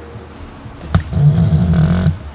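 Handling noise from a handheld camera being swung around: a sharp click about a second in, then a loud low rumbling rub for about a second.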